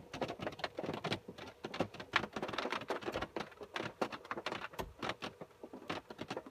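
Rain pattering, heard as a dense stream of light, irregular taps.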